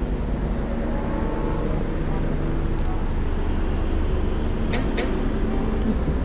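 Steady low outdoor rumble, with two short clicks about five seconds in.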